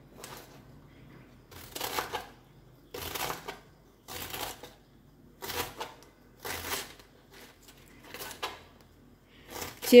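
A kitchen knife slicing through a head of cabbage onto a plastic cutting board, shredding it in about eight crisp cuts, roughly one a second.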